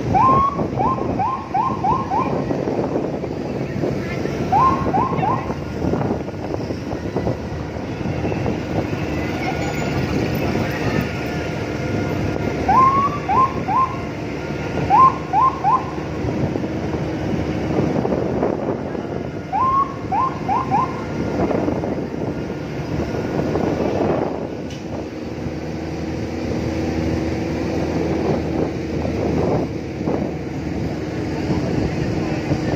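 Vehicle running along a road with wind and road noise on the microphone. Over it, groups of three to five short rising chirps come several times.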